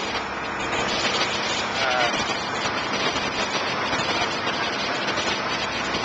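Motorboat running at speed: a steady rush of engine noise and churning water from the wake.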